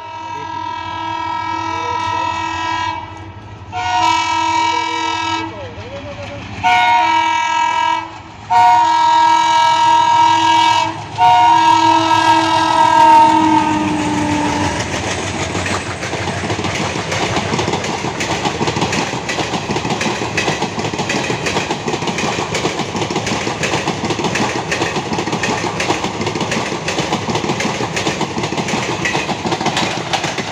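WDM3D diesel locomotive of the Tebhaga Express sounding its horn in five blasts as it approaches and passes. The last blast is the longest and drops in pitch as the locomotive goes by. Then its ICF coaches roll through the station with a steady rumble and clickety-clack of wheels over rail joints, running through without stopping.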